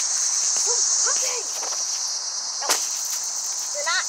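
Steady high-pitched insect chorus, a continuous chirring of crickets, with one sharp click a little past the middle.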